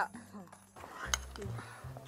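Faint, brief bits of speech, then a single sharp click just over a second in, over a low room hum.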